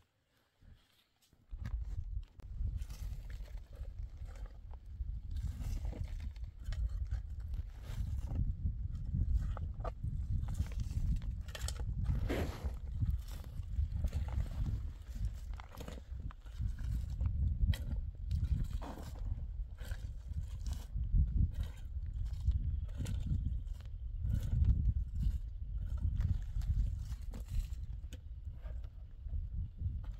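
Long-handled shovel digging into soil: irregular scrapes and thuds of the blade, starting about a second and a half in, over a constant low rumble.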